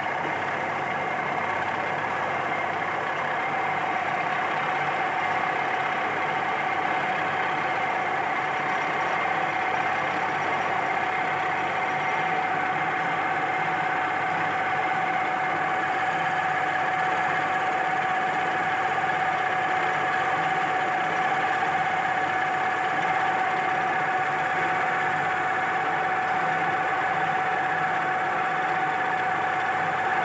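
Friction stir welding machine running steadily, a mechanical hum with a high whine over it, while its rotating tool is slowly plunged into the butted plates.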